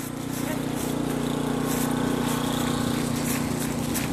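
A motor engine running steadily, a low, even hum that grows a little louder over the first second.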